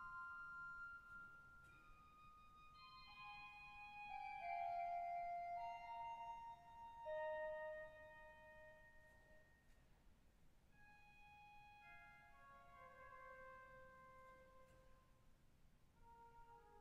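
Aeolian-Skinner pipe organ playing softly: slow, sustained chords with a gently moving melody line, swelling a little a few seconds in and then settling quieter.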